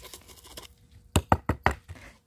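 Faint trickle of gritty potting mix poured into a small ceramic pot, then four quick knocks of the pot against a wooden tray, about a sixth of a second apart: tapping the pot down to settle the fresh mix around the succulent's roots.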